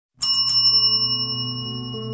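A bright, high bell chime struck twice in quick succession just after the start, ringing on over a low, sustained musical drone as background music begins.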